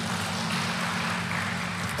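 Audience applauding, a steady even patter with no voice over it, over a low steady hum.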